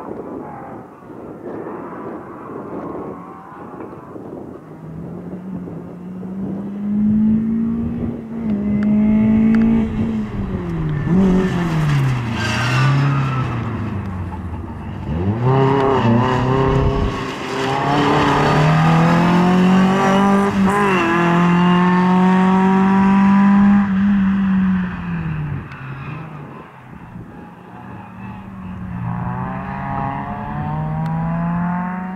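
Skoda Favorit rally car's four-cylinder engine revving hard, its note climbing and dropping again and again, with sharp falls in pitch near the middle. Loudest in the second half as the car passes close by.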